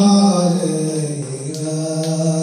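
A man singing a Bangla Islamic song in long, chant-like held notes, his pitch sliding slowly down through the first second and then holding.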